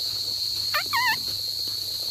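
Steady high-pitched drone of insects in pasture, with a short, high warbling call about a second in.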